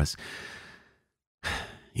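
A man breathing between spoken phrases: a soft breath out trailing off, a brief silence, then an audible in-breath about a second and a half in, just before he speaks again.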